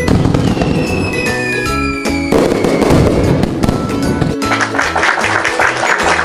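Fireworks sound effect over upbeat background music: a falling whistle, then crackling bursts.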